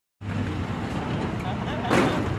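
A loaded dump truck's diesel engine running steadily with a low hum, and a sharp knock near the end.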